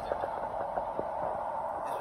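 Steady road noise from a car driving on a highway, heard from inside the cabin.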